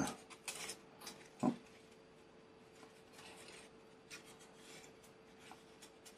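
Faint rubbing, scraping and light ticks of laser-cut balsa wood parts being handled and pushed into their slots, over a steady faint hum.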